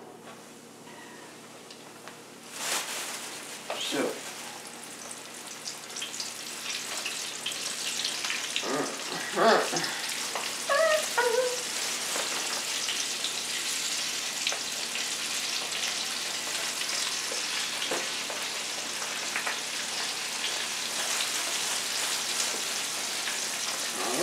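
Flour-dredged food frying in hot grease in a skillet: a sizzle that starts about two and a half seconds in and builds to a steady hiss.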